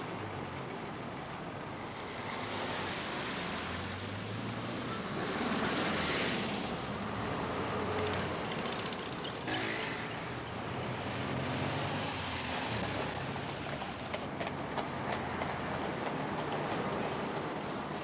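Steady rumble and hiss of motor vehicles, the low engine note shifting in pitch now and then, with a run of light clicks in the last few seconds.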